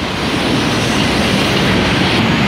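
Loud, steady roar of city street traffic, swelling slightly toward the end.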